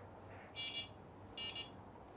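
Two short, faint, high electronic beeps, about a second apart, from a device in the room.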